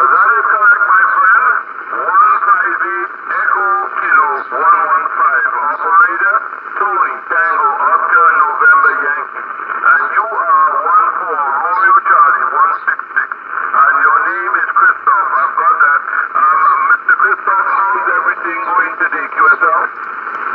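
A distant operator's voice on single-sideband, played from a Yaesu FT-840 HF transceiver's speaker. It is continuous talk, thin and narrow like a telephone, as received over shortwave.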